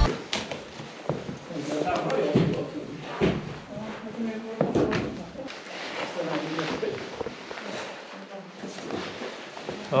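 Boots and hands knocking on the wooden rungs of a ladder during a climb down a mine shaft: irregular knocks and thuds, with short, indistinct voice sounds in between.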